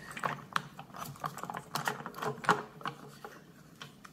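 Key working the lock of a motorcycle's locking fuel cap and the cap being undone and lifted out of the filler neck: a run of small, irregular mechanical clicks and rattles, the sharpest about two and a half seconds in, dying away near the end.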